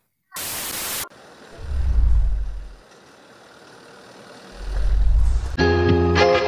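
A short burst of static-like hiss, then two deep low rumbling swells, then music starting near the end: the intro effects and music of a TV news report.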